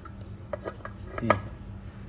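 A few light metallic clicks from a scooter's rear clutch pulley assembly as its parts are pressed down by hand against the torque spring.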